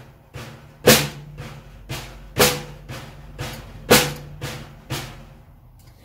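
Snare drum played with sticks in the flam accent rudiment: three loud flammed strokes about a second and a half apart, each followed by two softer single taps, at a slow, even tempo with the lead hand alternating. The strokes stop about five seconds in.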